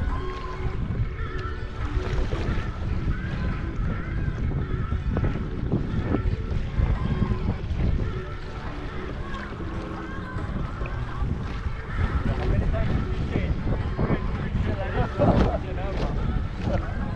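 Wind buffeting the microphone over water rushing and splashing along an OC1 outrigger canoe's hull and paddles in small ocean bumps: a steady, gusting rumble.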